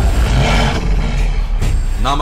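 Cinematic title-card sound effect: a deep, heavy rumble with a hissing swell that comes in about half a second in and fades away.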